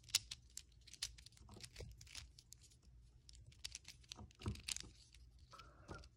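A miniature GAN 3x3 plastic speed cube being turned by hand: a run of faint, quick, irregular clicks as its layers are twisted.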